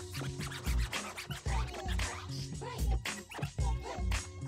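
Vinyl record scratched back and forth on a turntable over a music beat with heavy bass, in quick cuts and short pitch sweeps.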